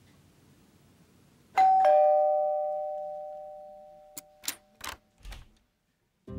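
Two-note ding-dong doorbell chime: a higher note, then a lower note a moment later, both ringing on and fading away over about three seconds. A few sharp clicks follow as the tones die out.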